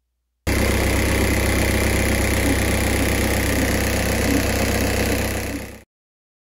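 Car engine idling steadily in the engine bay. It starts abruptly about half a second in and cuts off just before the end.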